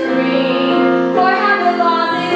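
A woman singing a Broadway show tune with piano accompaniment, holding two long notes with vibrato, the second starting about a second in.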